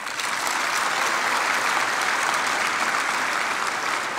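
A large audience applauding, swelling in at the start, holding steady, and easing slightly near the end.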